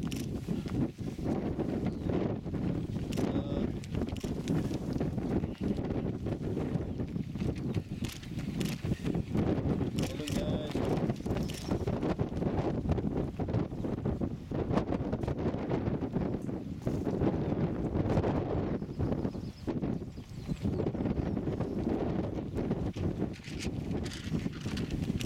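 Wind buffeting the microphone in the open, with the footfalls of runners on a tarmac lane and faint voices.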